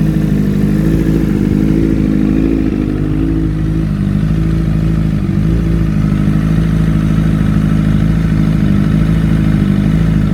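A 2009 Honda CBR RR sport bike's inline-four engine idling steadily.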